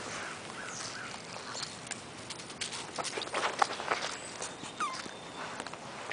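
Two beagle puppies play-fighting, giving a few short high-pitched calls and one falling call near the end, while their scuffling in dry leaves and grass makes a run of sharp crackles and taps about three to four seconds in.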